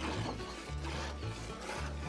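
Hand-milking a cow: jets of milk squirt from the teats into a container in a steady rhythm of about two squirts a second. Background music with a low bass line plays underneath.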